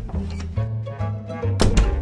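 Background music with a steady bass line, with a sharp thunk about one and a half seconds in: an interior door shutting.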